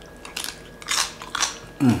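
Close-up biting and chewing of a piece of whole roast pig (lechon), with a few sharp crunches, followed near the end by a short hummed "mm" of enjoyment.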